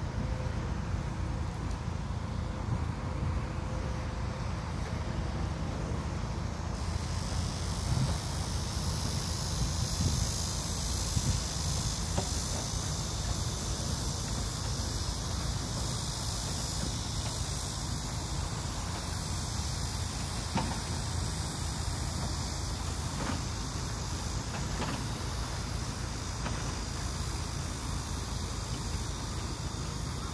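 Wind buffeting a phone's microphone, a steady low rumble. About seven seconds in, a steady high-pitched hiss joins it and holds.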